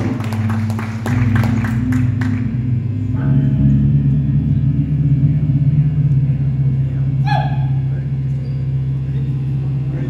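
Steady low drone of a held note ringing through the stage amplifiers of a metal band. Claps and crowd noise sound over it for the first two seconds.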